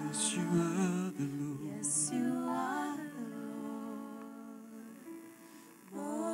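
Slow worship singing: sung voices holding long, gliding notes of a chorus, softening gradually over the second half.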